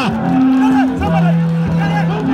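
A horn blowing long, steady low notes, dropping to a lower held note about halfway through, with a voice faintly audible over it.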